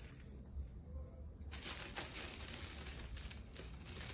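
Clear cellophane gift bag crinkling and rustling in the hands as a ribbon is tied around its gathered top. It is faint at first, and the crackling starts about a second and a half in.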